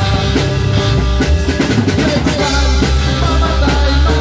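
Amateur rock band playing live: a drum kit with bass drum and snare up front over electric bass and guitars, the drums busiest in the middle.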